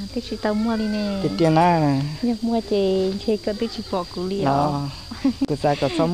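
A voice singing kwv txhiaj, Hmong sung courting poetry, in long wavering held notes that glide up and down from phrase to phrase.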